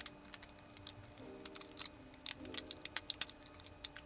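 Soft background music of sustained chords changing about every second, over many irregular small clicks and taps from a roll of 120 film and a Mamiya RB67 medium-format camera being handled.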